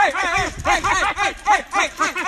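Two men yelling "hey" over and over at each other in quick, overlapping shouts, several a second, imitating dogs barking.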